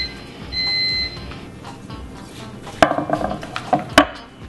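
Microwave oven's done signal, the end of its cooking cycle: a short high electronic beep, then a longer beep about half a second later. A few sharp knocks follow near the end.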